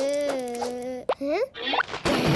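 Cartoon sound effects: a held, slightly wavering tone for about a second, then a sharp click and a few quick rising pops.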